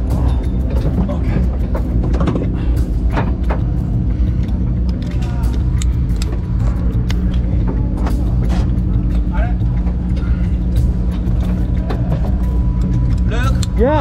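Suzuki Cappuccino kei race car's engine idling steadily, with short clicks and knocks from the seat harness and door as the driver straps in. Background music plays over it.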